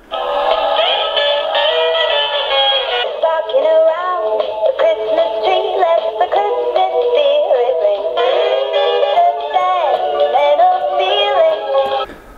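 Animated plush Christmas-tree toy singing a Christmas song through its small built-in speaker, with a thin sound that lacks highs. It starts as it is switched on and stops suddenly near the end.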